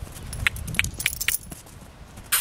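A horse trotting on a dirt surface: a handful of sharp clicks at an uneven pace, over a low rumble.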